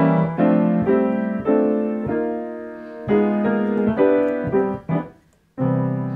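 Grand piano played in block chords: a slow melody with full chords struck together under each note, the melody doubled in both hands and chord tones filled in beneath it. About ten chords ring out, with a brief pause near five seconds before a new chord is struck.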